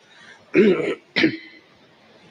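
A man clears his throat twice: a longer rasp about half a second in and a short one just after a second.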